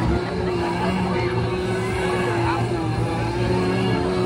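A steady, engine-like drone holding one slightly wavering pitch, with voices faintly behind it.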